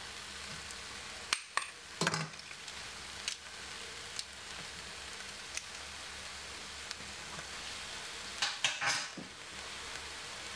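Metal garlic press clicking and clinking against a stainless steel pot as two garlic cloves are squeezed in: a few sharp clicks early, scattered single ones, and a cluster near the end, over a steady faint sizzle from the pot on the stove.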